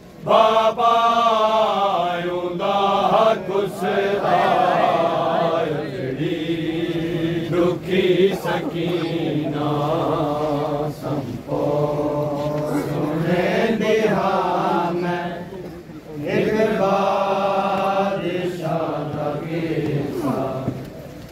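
A group of men chanting a Punjabi noha, a Shia mourning lament, together in long drawn-out melodic lines with brief breaths between phrases and a short pause about three-quarters of the way through.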